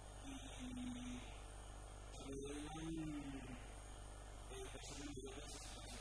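Low, steady electrical mains hum, with faint indistinct voice-like sounds now and then.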